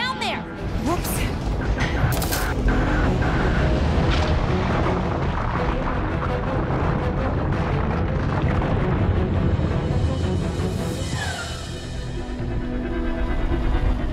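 Cartoon soundtrack: a deep, sustained rumble of sound effects under dramatic music, with a few sharp knocks in the first two seconds and a falling whoosh near the end.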